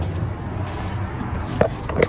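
Two short, sharp knocks with a brief ringing tone, about a second and a half and two seconds in, from a glass entrance door and its metal handle being pushed through, over a steady low rumble of handling and footsteps.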